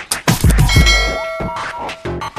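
A bright bell-like ding, the notification-bell sound effect of a subscribe-button animation, rings for about half a second starting under a second in, over electronic dance music with deep, booming kick drums.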